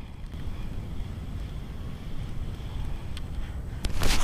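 Wind buffeting the microphone, a steady low rumble, with a couple of faint clicks near the end.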